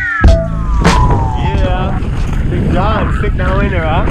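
A music track ends with a hit and a falling pitch sweep. Then wind rushes over the camera microphone on the water, and a rider whoops and hollers in wordless, swooping shouts.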